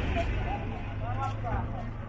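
Busy street-market ambience: the low rumble of a nearby minibus engine fades away, with people's voices talking over it.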